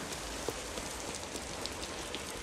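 Steady rain falling, an even hiss with a few faint drop ticks.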